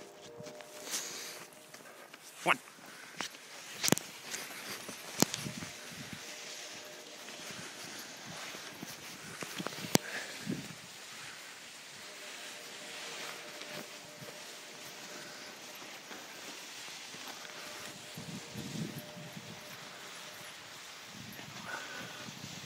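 A dogsled pulled by two Siberian huskies gliding over fresh snow, a steady hiss of runners and movement. There are several sharp knocks and clatters, four of them in the first ten seconds.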